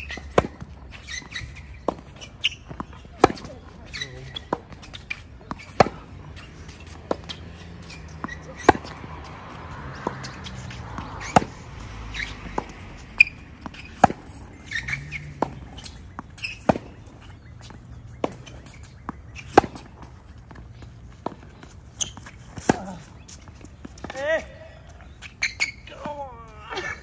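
Tennis rally on a hard court: a steady series of sharp pops, one every second or so, from the ball being struck by strings and bouncing off the court surface.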